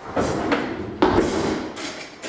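Electric hand mixer running, a dense noisy whirr with a sharper rattle about a second in, dying down near the end.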